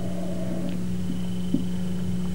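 A steady low electrical hum with a faint high-pitched whine above it, the background noise of the old recording and sound system.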